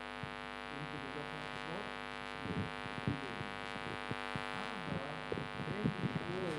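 Steady electrical mains hum with a dense stack of buzzing overtones, with a faint voice underneath.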